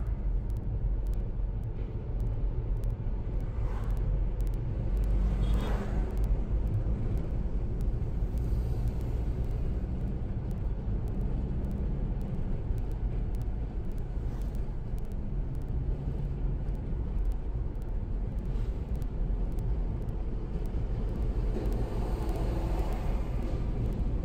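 Steady low rumble of a car driving on a highway, heard from inside the cabin. It swells briefly a few times as other vehicles pass, once near the end as an oncoming truck goes by.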